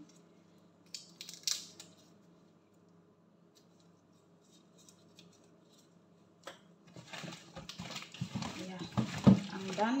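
Soft clicks and rustles of gloved hands peeling the shells off raw shrimp, growing into louder rustling and crinkling from about seven seconds in, with a voice near the end.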